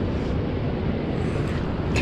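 A steady low rumbling noise, even throughout, with no distinct knocks or tones.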